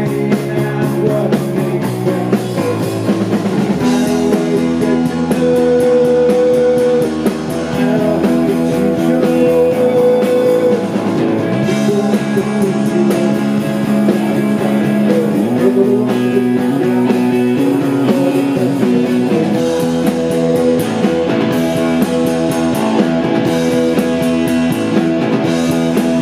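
Live rock band playing a song with electric guitars and drums, the guitar chords held and changing every few seconds.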